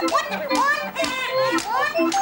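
The shrill, squeaky voice of a Petrushka glove puppet, made with a pishchik (swazzle) in the puppeteer's mouth: rapid chatter of high squeals that rise and fall.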